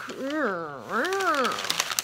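A woman's voice making two long wordless vocal sounds, each sweeping up and then down in pitch.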